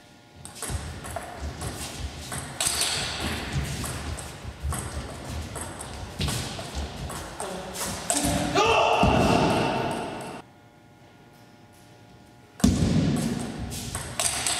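Table tennis rally: the ball clicking off the paddles and the table in quick succession, with a player's shout around nine seconds in as the point ends. After a short pause, the sound of play starts again.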